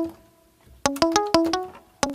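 Plucked, guitar-like software-instrument notes: one note dying away, a short pause, then a quick run of about five notes at different pitches.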